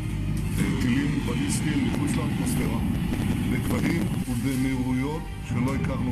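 A man speaking, not in English, over background music.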